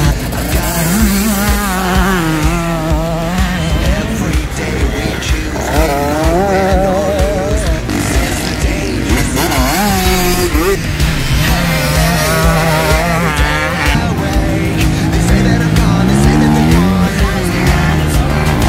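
Motocross bike engines revving up and down under throttle, mixed with loud backing music that has steady held bass notes.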